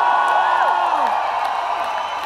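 Concert crowd cheering and whooping, many voices overlapping in a loud, dense wash that eases off slightly toward the end.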